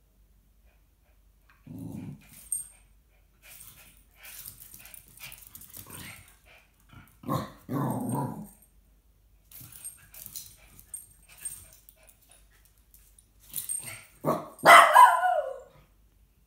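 Two small dogs, a Jack Russell terrier and a small black dog, growling low in short bouts, with scuffling and clicking sounds between. Near the end comes a loud bark that falls in pitch, the loudest sound.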